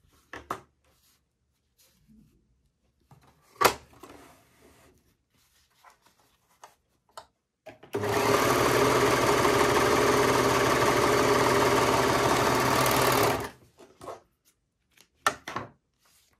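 Brother 1034D overlocker running steadily for about five and a half seconds, sewing a test seam after its lower looper has been rethreaded. A few light handling clicks come before it, the sharpest about four seconds in.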